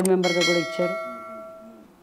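Subscribe-button notification bell sound effect: a single bright ding a fraction of a second in, ringing on and fading away over about a second and a half.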